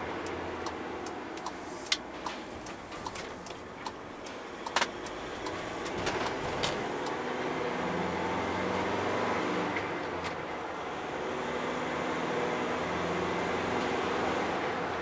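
In-cab sound of a MAN TGE van's 2.0-litre four-cylinder turbodiesel on the move, with road noise and a run of sharp clicks and knocks in the first half. From about halfway the engine note grows louder and steadier as the van pulls.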